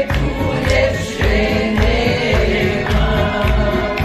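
A man singing a song into a microphone, with other voices joining in, over a backing track with a steady low beat about twice a second.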